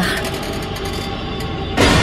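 A steady vehicle engine rumble used as a drama sound effect. Near the end a loud, sudden burst of sound cuts in.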